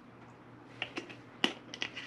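A few small, sharp clicks as a small glass spice jar and its metal lid are handled, starting a little under a second in and coming about five times, closer together near the end.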